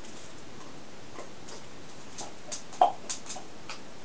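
Irregular light clicks and taps of plastic cupping cups and equipment being handled, with one sharper knock about three quarters of the way through.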